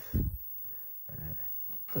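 Quiet room tone, broken by a man's short low voiced sound just after the start and a faint hesitant "uh" about a second in.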